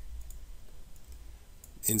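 A few faint computer-mouse clicks while text is being selected on screen, over a low steady hum; a man's voice starts right at the end.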